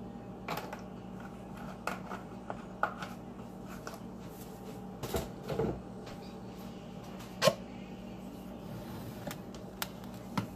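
Scattered knocks and clacks of kitchen items being handled and set down, the sharpest about seven and a half seconds in, over a steady low hum.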